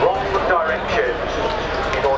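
Speech: voices talking over a steady low background din.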